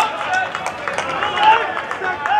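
Footballers' voices shouting and calling to each other across the pitch, with a few short sharp knocks.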